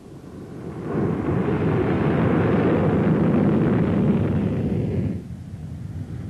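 Messerschmitt Me 163 Komet's liquid-fuel rocket motor firing as the plane starts its takeoff run: a loud, steady rushing noise that builds over about a second, holds, then drops away a little past five seconds in.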